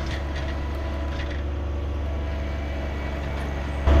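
John Deere 1023E compact tractor's three-cylinder diesel engine running steadily, a low even drone heard from the tractor. It jumps louder just before the end.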